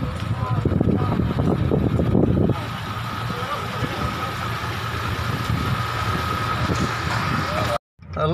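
A vehicle engine idling close by: a steady low hum with a thin high whine over it, and indistinct voices over the first couple of seconds. The sound cuts off suddenly near the end.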